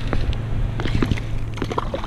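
Scattered light clicks and knocks as a spinning rod and reel are handled in a plastic kayak, over a steady low hum.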